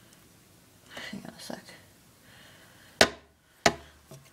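Two sharp knocks about three seconds in, half a second apart, the loudest sounds here; shortly before them, a brief soft voice about a second in.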